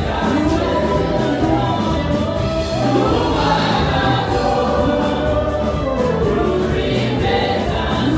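A church praise team singing a gospel worship song together into microphones, over a live band with bass and drums.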